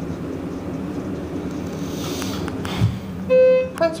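Schindler HXPress hydraulic elevator running, heard inside the car as a steady low hum. A soft thump comes near the end, then a loud half-second electronic beep from the car's signal fixtures.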